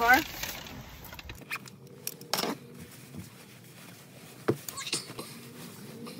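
Fabric rustling as a padded jacket is taken off inside a car, in a few short rustles about two and a half and four and a half seconds in.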